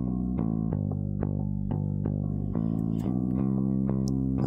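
Recorded bass guitar line playing back through the console, a run of plucked notes a few per second, compressed by an Empirical Labs Distressor and a Purple Audio MC77 patched in series, which bring up the lows.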